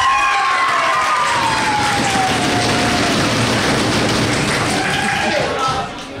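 A roomful of people applauding, with one voice holding a long cheer that slowly falls in pitch over the first few seconds and a shorter shout near the end.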